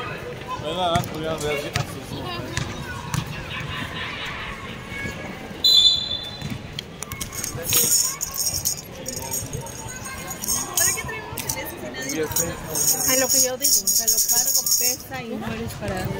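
Basketball game on an outdoor court: players' voices calling out over the ball bouncing and footfalls, with a short, sharp whistle blast about six seconds in that stops play.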